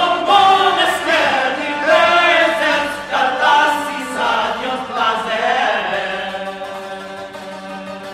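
Male voices chanting a medieval Occitan troubadour song in a winding, melismatic line over a steady low drone. The singing fades away about six seconds in, leaving the held tone.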